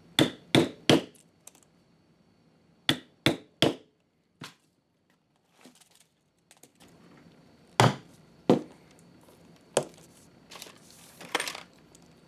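Hammer striking a rivet setter to set domed nickel rivets through leather on a steel block: sharp metallic strikes, three in quick succession twice in the first four seconds, then a few single strikes about eight seconds in, with some handling rustle near the end.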